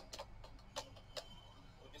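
A few faint, sharp clicks, about four spread over two seconds, over a low steady hum.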